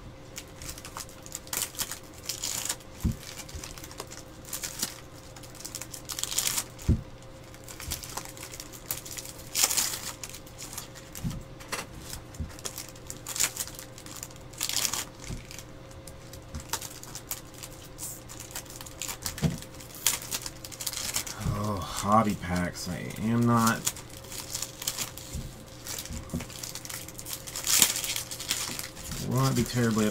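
Foil trading-card pack wrappers crinkling and tearing as packs of Bowman baseball cards are ripped open and the cards handled, in irregular sharp crackles, over a faint steady hum. A voice speaks briefly about two-thirds of the way through.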